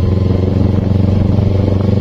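Carburetted Kawasaki Ninja 250 parallel-twin engine running steadily while riding at an even speed.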